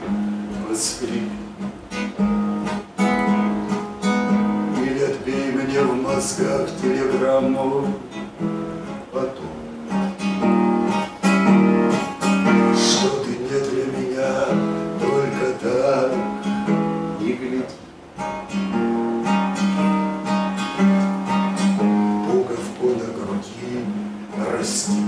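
Acoustic guitar strummed in chords, with a man singing along at the microphone.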